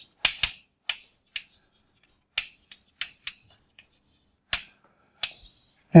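Chalk on a blackboard while words are written: a run of sharp, irregular taps and clicks. Near the end comes a short scrape as the words are underlined.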